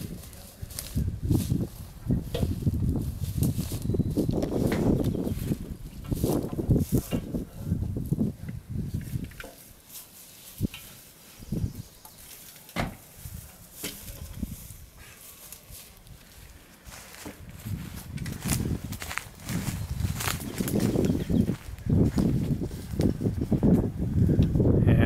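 Scattered clicks, knocks and scuffs of people handling a peeled log on a wheeled log carrier and strapping it down, over a low rumbling noise that comes and goes and is quieter in the middle.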